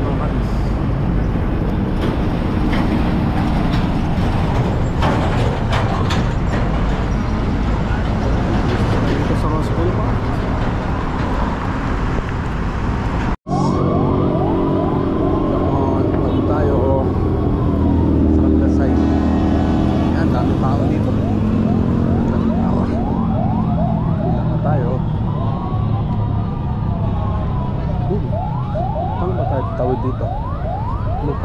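Heavy city road traffic: trucks, buses and cars passing, with a low engine hum and tyre noise. In the second half a siren wails in the traffic, rising and falling, then switches to quick repeated rising sweeps near the end.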